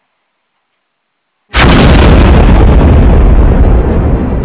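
Silence, then about a second and a half in a sudden, very loud blast that holds at full volume for about two seconds and starts to fade near the end.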